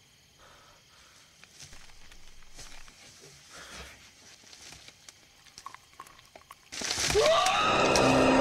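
Horror film soundtrack: a quiet stretch of faint rustle and soft clicks, then, nearly seven seconds in, a sudden loud hit with a rising, cry-like glide that runs into sustained scary music.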